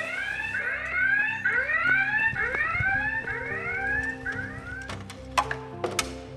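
Scramble alarm sounding a rapid series of rising whoops, a few a second, calling the crews to their aircraft; the whooping stops a little after four seconds in. A couple of sharp knocks follow near the end.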